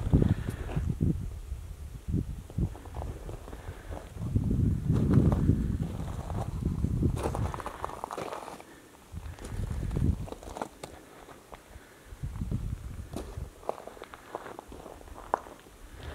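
Irregular footsteps on a dirt and gravel trail, with low rumbling swells of wind buffeting the camera microphone, loudest a few seconds in.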